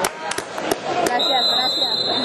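Referee's whistle blown in one long steady blast starting just over a second in, over spectator voices and a run of sharp clicks.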